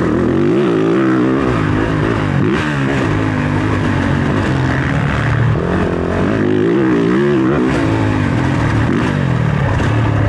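Motocross dirt bike engine running hard, its pitch rising and falling again and again as the throttle is opened and closed through the track's corners and ruts.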